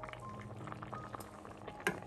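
Pot of vegetable soup simmering on the stove, a dense run of small bubbling pops. A single sharp clink near the end as the ladle touches the pot.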